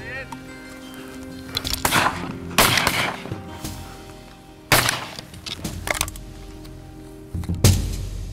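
Shotgun shots at incoming ducks, about four sharp reports spread a second or more apart, over a steady background music track.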